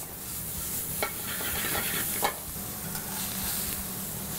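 Brussels sprouts and garlic sizzling in a hot oiled skillet as they are stirred with metal tongs, with a ribeye searing in the skillet beside it. The tongs click sharply against the pan about a second in and again just past two seconds.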